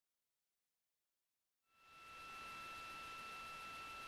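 Dead digital silence, then, a little under halfway in, a broadcast audio feed fades up: a faint steady hiss with two thin steady tones of line noise.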